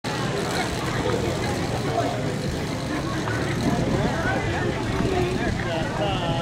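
Two-man crosscut saw cutting through a squared log, the long blade drawn back and forth in steady strokes. Crowd voices and shouts run over it.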